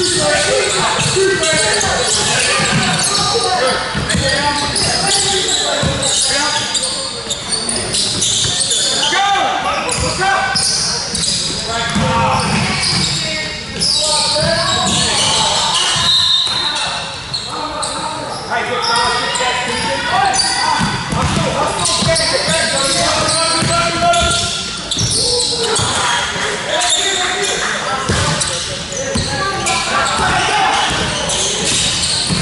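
Basketball game in a large, echoing hall: a ball bouncing on the wooden court amid indistinct shouts from players and spectators.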